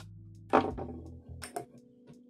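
Handling knocks from tightening a folding knife's pivot with a small screwdriver: one sharp knock with a short rattle about half a second in, then two lighter clicks. Quiet guitar background music runs underneath.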